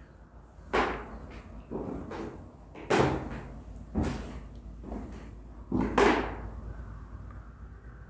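Footsteps on a bare pine plank floor in an empty wooden room: about eight heavy steps at an uneven walking pace, each a sharp knock with a short ringing tail.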